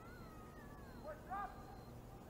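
Faint shouted calls: one long call that rises briefly and then falls in pitch, then a shorter, louder call a little past the middle.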